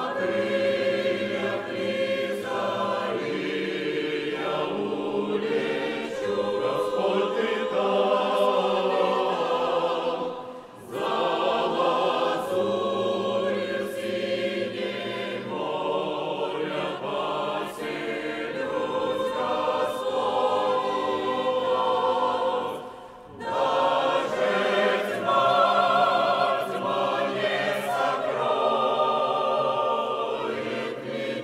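Mixed church choir of men and women singing together under a conductor, in phrases broken by two short breaths, about ten seconds in and again about twenty-three seconds in.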